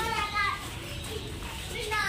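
Children's voices and chatter: a child's high-pitched voice in the first half second, then quieter background talk.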